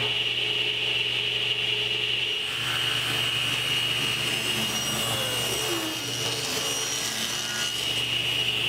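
Table saw running with a steady high whine, its blade ripping a narrow walnut filler strip along the fence. A rougher cutting noise joins in about two and a half seconds in and lasts almost to the end.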